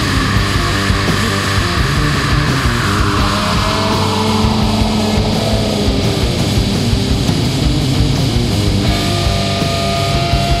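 Hard-rock instrumental break with electric guitar, bass and drums, no vocals. A sound sweeps down in pitch from about three to six seconds in.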